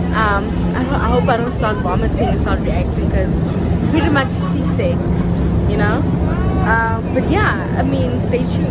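A woman talking over the steady low hum of a cruise boat's engine running.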